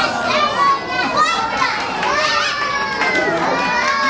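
Several children calling out and exclaiming over one another in reaction to a magic trick, with high voices rising and falling throughout.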